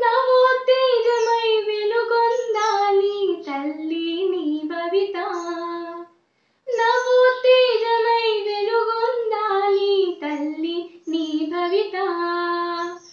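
A girl singing a patriotic song solo, with no instrumental accompaniment. She breaks off briefly about halfway through, then sings on.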